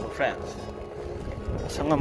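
A steady low rumble of wind and a motor while moving, with a few words of speech at the start and again near the end.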